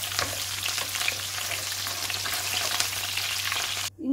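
A tempering of mustard seeds, dals, dried red chillies, green chillies and curry leaves frying in hot oil in a pan, with a steady sizzle full of tiny crackles as a wooden spatula stirs it. It cuts off abruptly just before the end.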